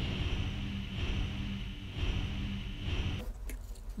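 Logo-intro sound effect: a steady electronic hum with a slow pulse in its low tone, cutting off a little after three seconds.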